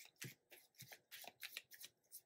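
Tarot deck being hand-shuffled: a faint, quick run of soft card-riffling strokes, about four a second.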